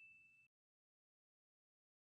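Near silence: the last faint ring of a bell-like chime sound effect, one high tone fading out within the first half second, then complete digital silence.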